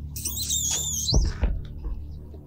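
Dramatic soundtrack stinger: a high, wavering whistle-like tone for about a second that rises and falls sharply at its end, followed by two low booms.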